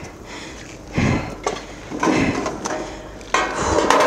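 Handling noise from a police body camera during a struggle on the floor: clothing rubbing over the microphone and the knocks and rattles of gear, in irregular bursts, loudest near the end as the camera is jolted.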